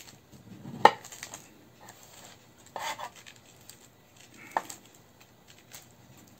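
A gingerbread loaf being split into two slices along a scored line: a few scattered clicks and short scrapes of the knife and bread being handled, the sharpest a tap about a second in.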